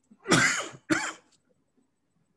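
A man coughs twice in quick succession, the first cough longer than the second.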